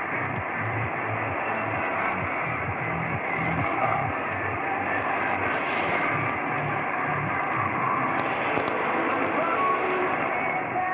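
Shortwave AM broadcast of music on 6200 kHz, heard from a Belka-DX receiver. The sound is narrow and muffled with the treble cut off, and a steady hiss of static lies under it, with a low beat pulsing through.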